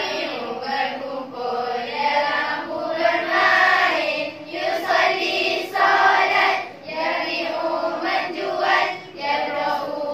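A group of schoolgirls singing together in unison, in phrases of a second or two with short breaks between them.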